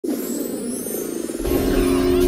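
Sound effects for a DVD menu's intro animation: a whooshing sweep, then about one and a half seconds in a deep rumble and steady low held tones come in as the menu music begins.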